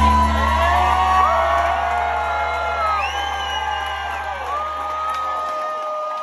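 A live band's last chord ringing out and fading away near the end, under a crowd whooping and cheering.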